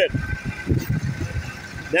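A coach's diesel engine running low and uneven as the coach pulls away and turns, with a faint steady high whine throughout.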